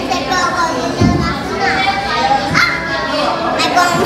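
Young children's voices chattering and calling out over one another, with a couple of high voices gliding up in pitch around the middle.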